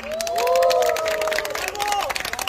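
Audience applauding with a few cheering voices, just after a saxophone ensemble's piece ends.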